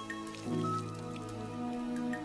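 Soft background music with held chords, under water dripping and spattering from a wet cloth being wrung out.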